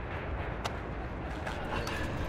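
Steady low outdoor city rumble, with one sharp click about a third of the way in and a few faint ticks.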